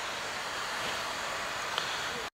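Steady hiss of road traffic passing nearby, with no distinct engine or horn standing out, and a faint click near the end.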